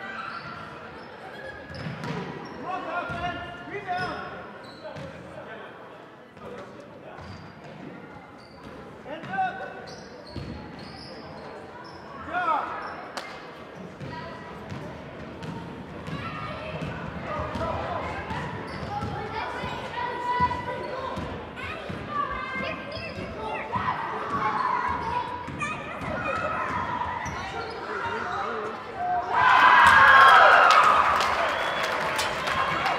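A basketball bounces on a hardwood gym floor during play while players and spectators call out, with the echo of a large hall. The voices get louder right at the end.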